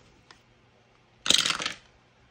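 Two dice rolled in a small wooden dice box, clattering for about half a second a little over a second in.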